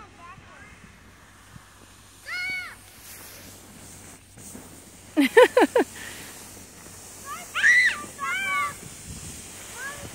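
Children's high-pitched shouts and squeals: one short call about two seconds in and two more near the end. A quick four-beat burst of laughter comes about five seconds in.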